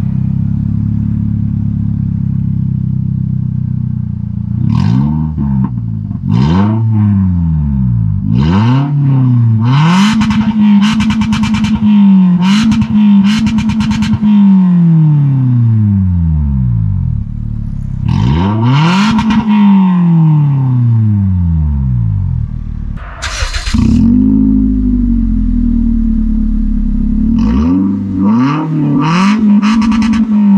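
Toyota Corolla 1.6-litre four-cylinder engine heard through an aftermarket electronic valved exhaust with the valve fully open, idling and then revved repeatedly: short throttle blips, a few seconds held high, and longer rises and falls, dropping back to idle between them.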